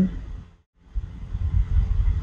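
Steady low rumble of background room noise with no distinct events; it fades out to a brief total silence about half a second in, then returns.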